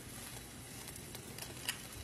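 Egg frying in a nonstick pan, a faint steady sizzle, with a couple of soft clicks about a second and a half in.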